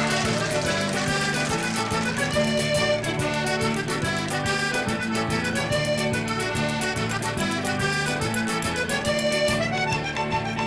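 Button accordion playing a traditional dance tune, backed by a band with drums keeping a steady beat.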